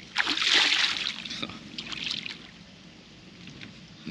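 Water splashing and sloshing from a hooked carp being netted at the surface: one loud splash that lasts about a second, followed by a few smaller splashes.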